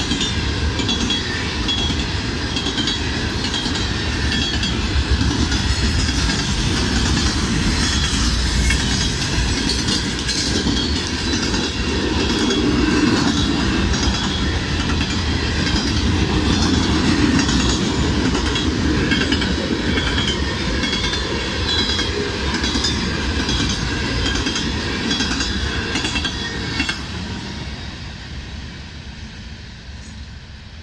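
CSX coal train's hopper cars rolling past at close range: a steady rumble of wheels with clickety-clack over the rail joints. About 27 seconds in, the last car goes by and the sound falls away.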